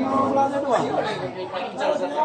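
Chatter of several people talking over one another, with no clear ball strike standing out.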